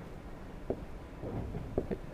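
Quiet room tone with a steady low hum and a couple of faint short clicks.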